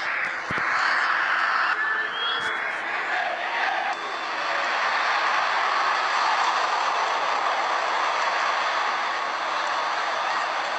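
Large stadium crowd at a football match, a steady wash of crowd noise that swells slightly around the middle.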